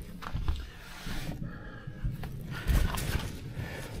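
Rummaging and handling noise: clothing and a life vest rustling against a chest-worn microphone, with scattered clicks, knocks and low thumps as someone searches pockets and a car's door area for a key fob.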